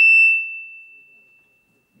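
PA system feedback ringing through the handheld microphone: a single steady high-pitched tone, loud at first, then fading away over about a second and a half.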